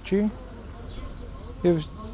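A man speaking Armenian in two short bursts, with a pause of about a second and a half between them. During the pause a faint buzz sits under the background hiss.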